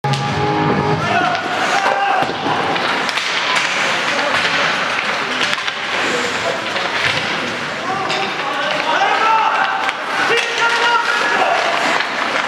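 Ice hockey game sounds echoing in an arena: players' shouts and calls mixed with repeated sharp clacks of sticks and puck on the ice and boards.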